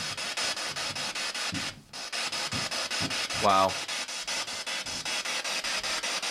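Ghost-hunting spirit box sweeping through radio stations: a steady hiss of static chopped about eight times a second, cutting out briefly about two seconds in.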